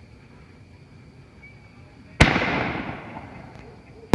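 A single loud bang about two seconds in, its echo dying away over about a second. It is the lift charge firing a 5-inch canister firework shell out of its mortar tube.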